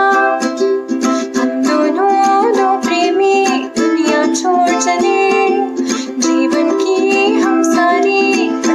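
Ukulele strummed in a steady rhythm under a woman singing a Bollywood film-song mashup, her voice holding and gliding between notes.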